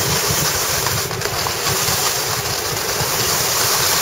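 Skis sliding and scraping over soft, slushy spring snow during a fast descent, with wind rushing over the microphone: a steady, loud rush of noise.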